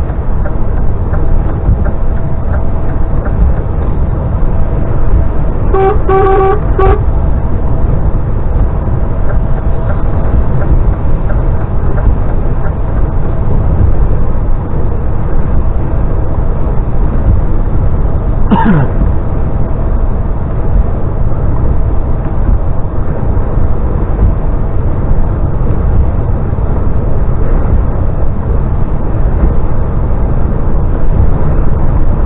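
Steady low road and engine noise inside a DAF XF lorry cab on a wet motorway. About six seconds in there is a quick run of three short pitched toots, and later a single brief falling tone.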